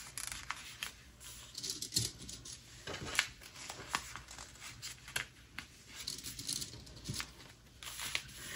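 Faint rustling of a paper template being handled, with scattered small clicks and ticks as straight pins are pushed through the paper and the fabric and batting layers beneath.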